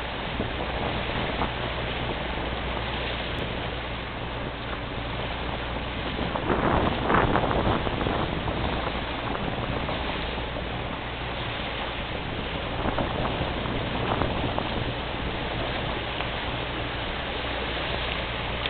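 Boat engine running steadily at about 3000 rpm just to hold the boat still against a fast spring tide flooding into the loch, with rushing water noise over the engine's low hum. The rush swells louder for a second or two about seven seconds in.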